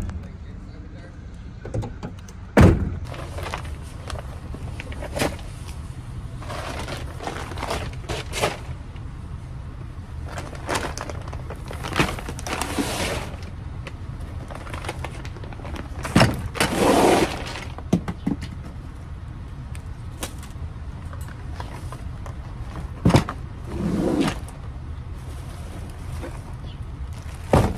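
Grocery bags being lifted from a shopping cart and loaded into a van: bags rustle, and items knock and thump as they are set down, a few sharp knocks scattered throughout, over a steady low rumble.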